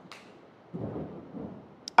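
A short pause between sentences: a soft breath at the start, then a low, muffled rumble for under a second, and a small mouth click just before speech resumes.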